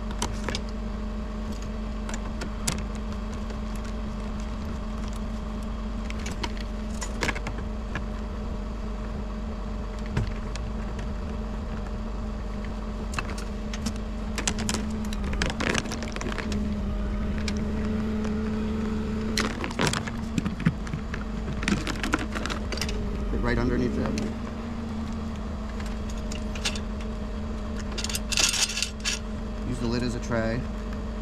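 Steady hum of a bucket truck's running engine, with scattered clicks, taps and rattles from a fiber splice enclosure and tools being handled, busiest near the end.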